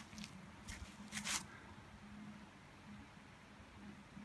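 Quiet woods: two brief rustles of dry brush and leaf litter about a second in, over a faint, steady low hum.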